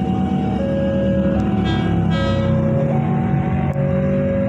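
Level crossing warning alarm sounding a two-tone signal, alternating a higher and a lower tone about every three-quarters of a second as a train approaches. A steady low vehicle rumble runs underneath, and a brief horn sounds about halfway through.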